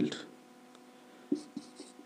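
Marker pen drawing short strokes on a whiteboard, faint scratchy sounds in the second half.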